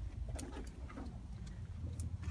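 A few faint light taps and rustling as paper stickers are pressed onto a paper wall poster, over a low steady rumble.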